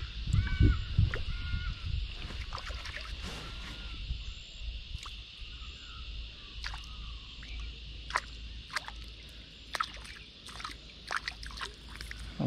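Water sloshing and lapping around a plastic kayak hull, heaviest in the first second or so, with a few short chirps early on and a steady high hiss behind. Scattered sharp ticks and small splashes follow in the second half.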